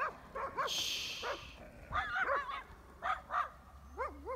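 Dogs barking and yelping in three short, high-pitched bouts, guarding their territory. A brief hiss of noise comes about a second in.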